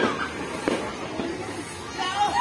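Two sharp firecracker pops, one right at the start and another under a second later, over background voices.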